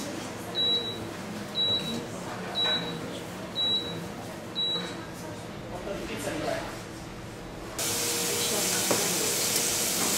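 Short high beeps about once a second for the first five seconds, then a steady hiss that starts suddenly near eight seconds in.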